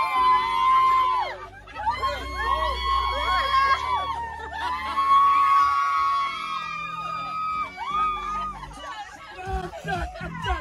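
A group of people cheering and whooping together at once, with long held shouts, in a packed bus cabin.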